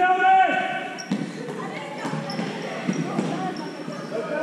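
A basketball bouncing on a sports hall floor about once a second, with short high squeaks of shoes on the court. A brief shout at the start.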